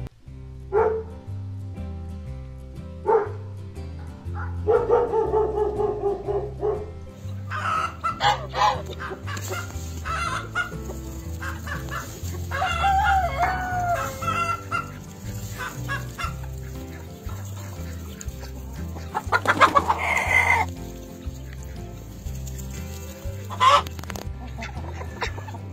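A flock of hens clucking in short, separate calls while a rooster crows, with a long call about five seconds in and a loud burst of calls near the end. Faint background music runs underneath.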